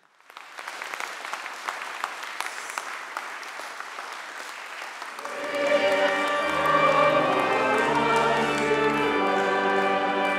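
An audience applauding for about five seconds. Then organ and choir music starts, with long held low bass notes.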